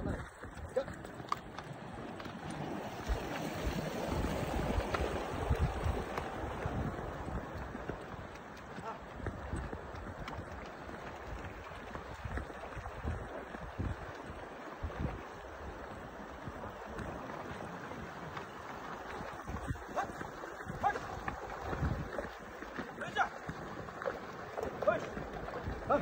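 Shallow mountain stream running over rocks, with gusts of wind buffeting the microphone.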